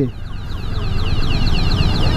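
Low, steady rumble of the KTM 390 Adventure's single-cylinder engine idling among heavy traffic. A faint, rapid run of high falling chirps sits above it.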